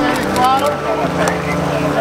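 A Ford Bronco's engine running low and steady as the truck crawls up a rock ledge, with indistinct voices over it.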